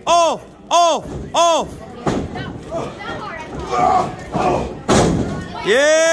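Ringside wrestling crowd. One voice shouts the same short call three times in quick succession, about two a second. Then comes general crowd noise with a sharp thud near the end, and a long held shout begins just before the close.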